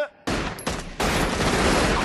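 A volley of rapid gunfire: a few sharp shots about a quarter-second in, then a dense, unbroken string of shots from about a second in.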